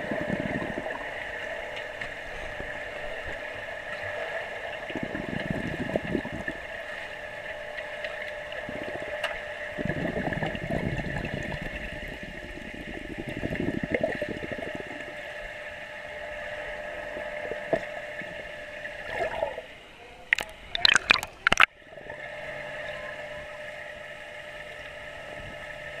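Underwater sound in a swimming pool, heard through the camera: a steady hum with muffled swells of water churned by a small child swimming. About twenty seconds in comes a brief burst of loud, sharp sounds.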